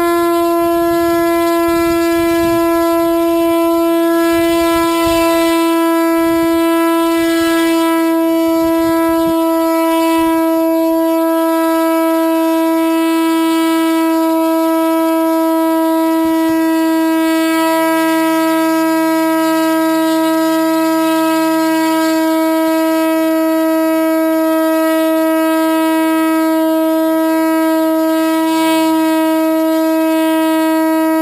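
Motor and propeller of a 1.6 m Zagi foam flying wing running at a constant throttle during a hand-held static thrust test. It makes a loud, steady, high-pitched drone that holds one pitch throughout.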